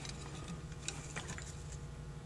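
A few faint, light clicks and taps from handling the metal float and bowl of a Holley 2280 carburetor while the floats are bent and set level, over a steady low hum.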